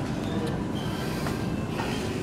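Shopping cart rolling along a supermarket aisle: a steady rattling rumble of small wheels, with a brief high squeak a little under a second in.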